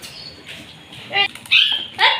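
Parakeet giving two short, harsh squawks near the end, the second louder and higher, as it is held down and bathed in a tub of water.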